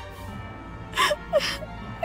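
A woman's tearful gasping breaths, twice about a second in, over soft, steady background music.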